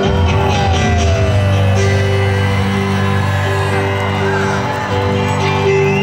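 Live band music through an arena PA: electric guitar and band playing an instrumental passage with steady held chords, with whoops and shouts from the crowd.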